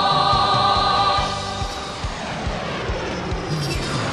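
Choir singing a military song over a steady beat; about a second in the song drops back and the rushing noise of jet aircraft flying past takes over, its pitch sweeping downward.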